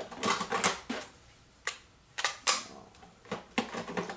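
A string of irregular light clicks and taps: small hard plastic craft items such as clear stamps, acrylic blocks and stamp packaging being handled and set down on a craft desk.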